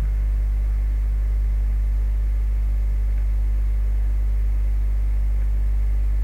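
Steady low electrical hum with a faint hiss, the recording's background noise, with nothing else over it.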